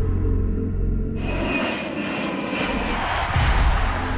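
Jet aircraft engine noise coming in suddenly about a second in, swelling and fading away about two seconds later, over dark background music with a steady low bass.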